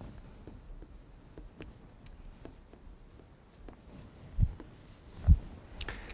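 Dry-erase marker writing on a whiteboard in faint, scattered short strokes, with two low thumps near the end.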